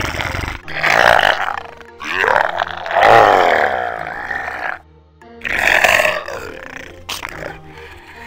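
Zombie growls and groans laid over background music: four guttural, voice-like groans, the longest starting about two seconds in and lasting over two seconds.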